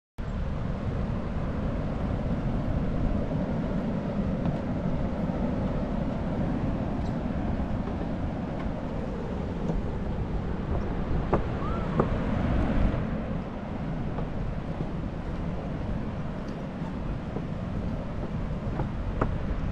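Steady rushing noise, heaviest in the low end, from wind buffeting the camera microphone, with a few light knocks of footsteps on a wooden boardwalk.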